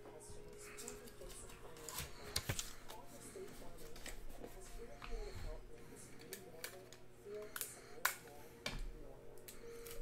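Quiet handling of trading-card boxes, paper and plastic card sleeves on a tabletop: scattered light clicks and taps, a few sharper ones about two seconds in and again near eight seconds.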